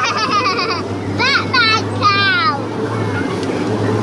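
Miniature train's small engine running with a steady hum, with a young child's high-pitched squeals over it in the first second and again from about one to two and a half seconds in.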